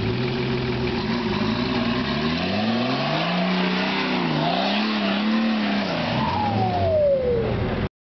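Engine of a modified off-road 4x4 revving under load as it climbs a steep muddy slope: the pitch rises, dips briefly midway, climbs again and drops back near the end. A high falling whine sounds near the end.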